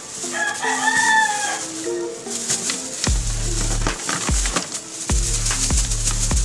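A rooster crows once near the start, a single arching call of about a second and a half, over background music with a repeating bass line.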